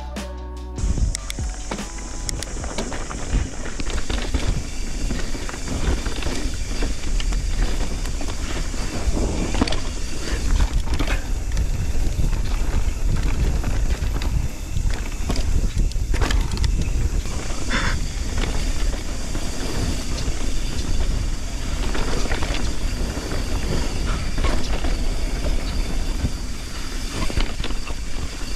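Mountain bike rolling fast down a dirt trail: a steady rumble of tyres over dirt with many small knocks and rattles, and wind on the camera's microphone. Background music plays over it.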